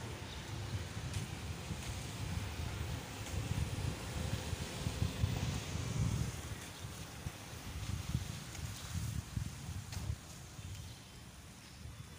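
Wind rumbling on a handheld microphone, swelling and fading in uneven gusts.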